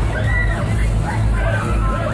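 Loud music from a fairground ride's sound system, with strong bass and a voice over it, and crowd chatter beneath.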